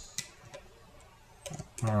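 A few faint clicks and taps of a loom hook against the plastic pegs of a Rainbow Loom as rubber bands are picked off them: one sharp click just after the start, then a small cluster about a second and a half in.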